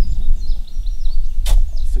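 Outdoor ambience with an uneven low rumble and faint bird chirps, and one sharp click about one and a half seconds in.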